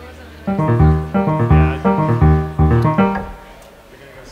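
Electric keyboard playing a short burst of loud chords with heavy bass notes, starting about half a second in and stopping near three seconds. The newly added keys are being tried out in the band's mix.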